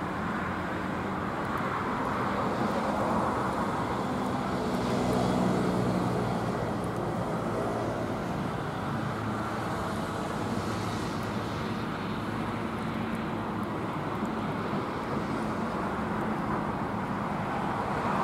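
Steady road traffic noise, a continuous wash of passing cars that swells a little about five seconds in.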